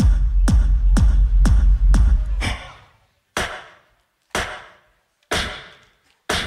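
Beatboxed loopstation beat: hard hits with a deep sub-bass boom, about two a second. The bass cuts out about two and a half seconds in, leaving single hits with short ringing tails roughly once a second.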